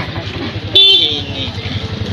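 A vehicle horn gives one short toot about a second in, over steady street traffic noise.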